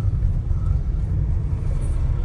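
Steady low rumble of a car driving on a paved road, with engine and tyre noise heard from inside the cabin.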